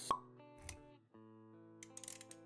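Intro music with sustained notes, and a single sharp pop sound effect just after the start, followed a little past half a second by a softer low thud.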